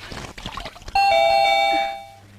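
Two-tone ding-dong doorbell ringing about a second in: a higher tone followed at once by a lower one, both ringing on and fading near the end. Before it, a cloth sloshing in a bucket of water.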